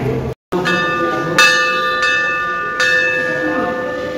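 Large hanging brass temple bell struck three times, just under a second in, then at about one and a half and three seconds. Each strike rings on in several steady overtones that slowly fade.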